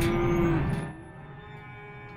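One of the penned cattle mooing: one long, steady moo that fades out in the first second.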